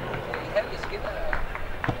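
Distant voices of players and onlookers calling out over steady outdoor background noise, with a few light knocks, the clearest near the end.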